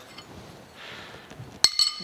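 Steel dividing-head index plate being handled against the cast-iron head and mill table: faint sliding, then a quick cluster of sharp, ringing metal clinks about one and a half seconds in.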